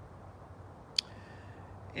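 Quiet outdoor background with one short, sharp click about a second in.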